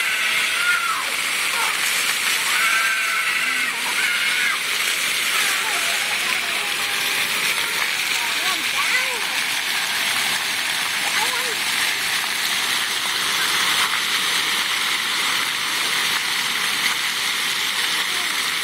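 Steady hiss and spatter of splash-pad fountain jets spraying water onto wet concrete, with high children's voices calling out now and then in the background.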